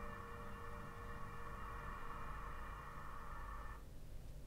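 The last held chord of a recorded music track, several steady tones sounding together, played quietly over hi-fi loudspeakers in a listening room; it cuts off near the end, leaving a low room rumble.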